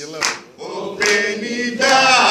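A man singing a Greek laïko song live. The voice breaks off briefly just after the start, then comes back from about a second in and rises into a long held note near the end.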